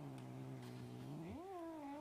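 Cat in a onesie giving a long, low yowl that rises in pitch about halfway through and holds the higher note.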